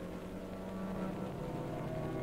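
A steady low hum with a faint held tone and no breaks.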